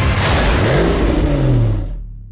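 A car engine revving, its pitch rising and falling, in a dense trailer sound mix with music, dying away near the end.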